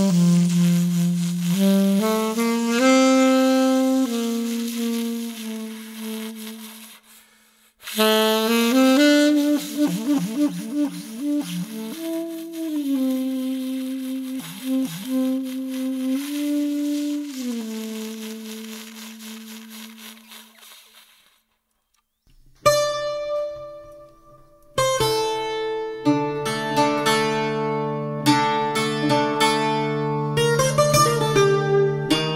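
Unaccompanied saxophone playing a slow melody in two long phrases, the second fading out about two-thirds of the way in. After a brief silence a Portuguese guitar comes in with one plucked note, then a run of plucked notes over held low strings.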